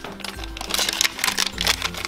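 A LEGO minifigure foil blind bag crinkling and rustling as it is torn open by hand, in rapid irregular crackles, over background music with a steady bass.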